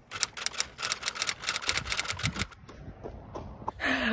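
A rapid, even run of sharp clicks, about nine a second, stopping about two and a half seconds in, followed by softer rustling and a few scattered clicks.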